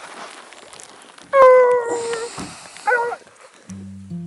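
Hunting hound baying: one long bay about a second in, then a shorter one. Music begins near the end.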